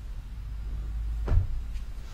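A single soft thump about a second and a half in, a heel tapping down on a padded mattress as the leg is lowered, over a steady low hum.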